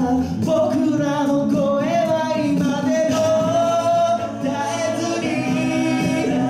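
Six-man a cappella group singing live into microphones: a lead voice carries the melody over sustained backing harmonies from the other male voices, with no instruments.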